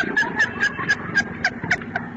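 A person laughing hard in a rapid run of short, high-pitched bursts, about five a second.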